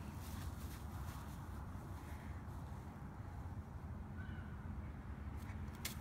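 Quiet outdoor ambience with a steady low rumble, a brief faint chirp about four seconds in, and a single sharp click near the end.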